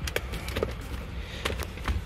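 A few light clicks and knocks from a laptop being handled and moved while it shuts down, over a low steady rumble.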